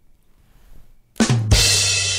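A short drum sting after near silence: drum hits a little over a second in, then a cymbal crash that keeps ringing.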